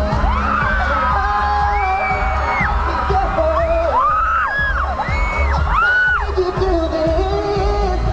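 Live pop music played loud through a concert PA: a heavy bass beat under singing with high sliding notes.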